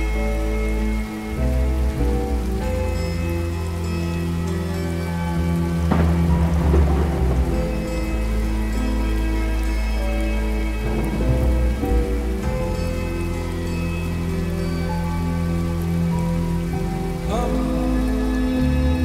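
Steady rain with rumbles of thunder laid over slowed, reverb-heavy lofi music with sustained chords and a deep bass; the thunder swells about six and eleven seconds in.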